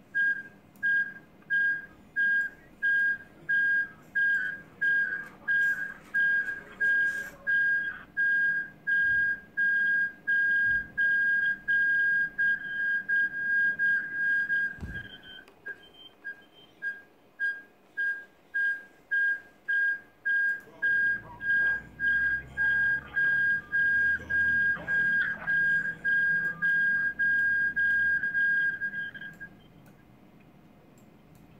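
Electronic beeping: a single high steady tone pulsing on and off about twice a second, with a brief stutter of shorter beeps and a light knock about fifteen seconds in, stopping just before the end.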